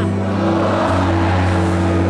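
Live band music: sustained low keyboard and bass chords, with the chord changing about a second in.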